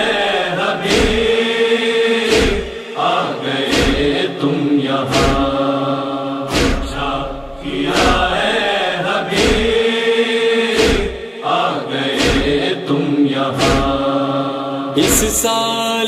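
Male voices chanting a sustained, wordless refrain of a Muharram noha, with no instruments, over a steady beat of matam chest-beating thuds about every second and a half.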